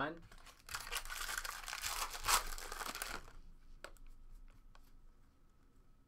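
Foil trading-card pack torn open and crinkled, a dense crackle lasting about two and a half seconds from just under a second in, followed by a few faint clicks.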